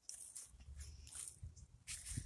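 Faint footsteps rustling on dry fallen leaves, with a few short crackles over a low, uneven rumble.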